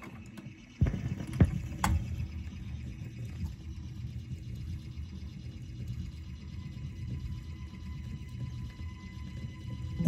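BSR console record changer cycling between 45s: a few sharp clicks in the first two seconds, then a steady low rumble from the turntable and changer mechanism.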